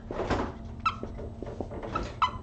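Dry-erase marker squeaking on a whiteboard while writing, in a few short strokes.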